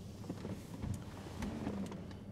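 Quiet car cabin: a low steady hum with a few faint clicks and rustles of people shifting in their seats.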